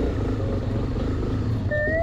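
Police motorcycle engine running at low speed, a steady low rumble. Near the end a siren starts, its pitch rising.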